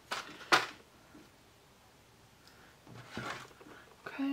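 Handling noises from false-lash application tools close to the microphone: two quick, sharp clacks about half a second apart, the second the louder, then a softer rustle about three seconds in.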